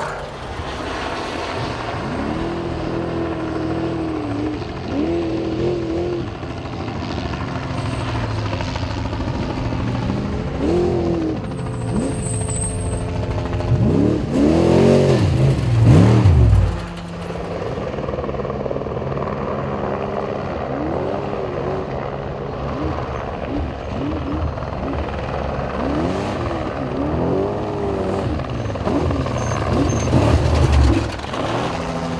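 Trophy truck engines revving hard as off-road race trucks go by on a dirt course, the pitch rising and falling in repeated surges. The loudest is a close pass a little past the middle, which cuts off sharply.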